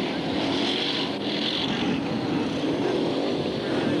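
A pack of BriSCA Formula 1 stock cars' V8 engines racing round a shale oval, several engines running together at a steady level with their pitch wavering as they rise and fall around the track.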